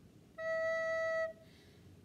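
Soprano recorder playing a single held E note, a steady tone lasting just under a second that starts about half a second in.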